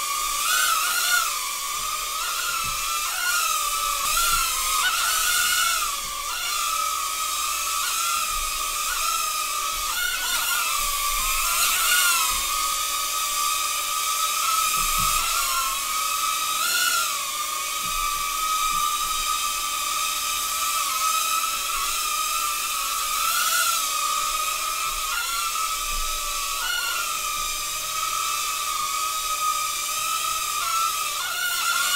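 Hand-controlled UFO mini drone's small propellers whining steadily as it hovers, the pitch dipping and recovering briefly every few seconds as the motors adjust.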